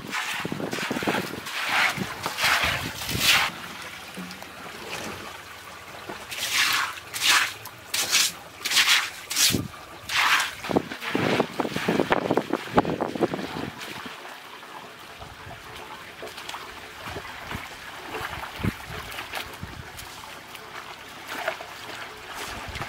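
A straw broom sweeping water across a wet concrete floor in repeated swishing strokes, over water running from a hose. The strokes stop about two-thirds of the way through, leaving the steady sound of the running water.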